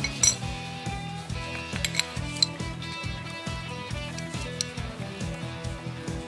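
Background music with a steady beat, over a few light metallic clinks of brake pads being fitted into a BMW G650GS's Brembo front brake caliper.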